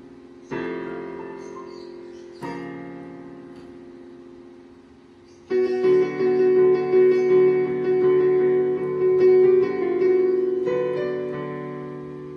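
Digital piano played with both hands: two chords struck a couple of seconds apart and left to ring out, then, about five and a half seconds in, a sudden loud run of fast notes and chords. Near the end one more chord rings away.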